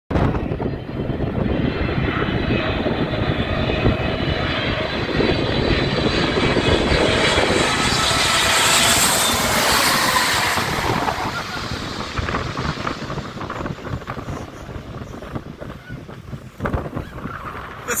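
Twin-engine jet airliner on landing approach with its gear down, passing low overhead. The engine roar, with a faint high whine early on, swells to its loudest about nine to ten seconds in, then fades as the jet moves away.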